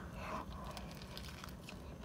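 Faint close-up biting and chewing of a soft biscuit sandwich with a crispy fried chicken tender inside, with small scattered crackles.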